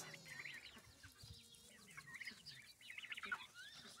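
Very faint, soft high peeps and clucks from chickens and young turkeys feeding from a hand, a string of short calls with a slightly louder one near the end.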